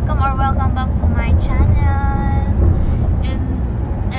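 A woman's voice, with a few drawn-out words, over steady low road noise inside a moving car's cabin.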